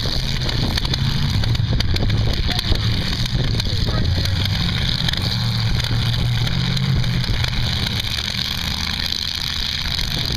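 Demolition derby cars' engines running and revving, a loud low drone that rises and falls without a break. A continuous hiss sits above it.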